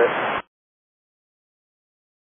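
The end of a recorded air traffic control radio transmission: one last word over thin radio hiss that cuts off abruptly less than half a second in. Then dead digital silence.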